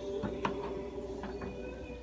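A serving spoon clinking and scraping against a pot a few times as meat sauce is spooned onto spaghetti, over a steady background hum.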